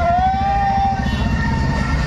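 Several motorcycle engines running and revving as riders pull away, with a single held tone lasting about a second at the start.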